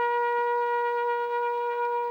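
Solo trumpet holding one long, steady note of a military honours call, sounded while officers stand at the salute.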